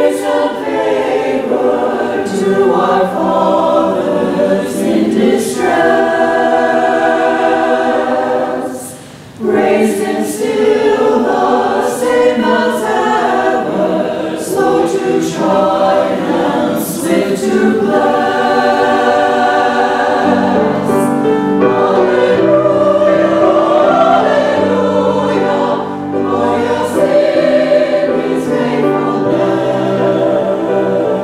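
Church choir singing an anthem. The singing breaks off briefly about nine seconds in, and lower notes come in from about twenty seconds on.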